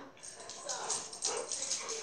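Quiet sounds of a golden retriever moving about close to the microphone while doing tricks.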